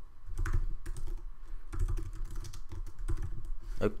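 Typing on a computer keyboard: an irregular run of quick keystrokes.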